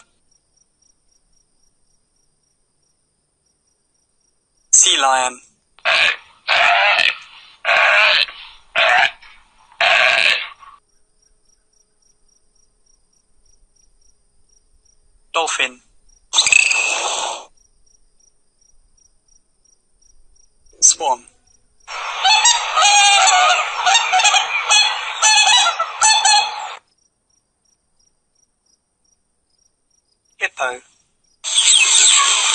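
Recorded animal calls in separate bursts: a run of about six short calls, a pause, a pair of shorter calls, then one dense call lasting about five seconds.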